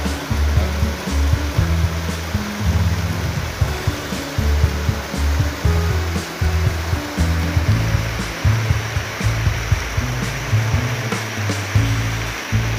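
Stream water running and splashing over rocks, under background music with a steady bass line.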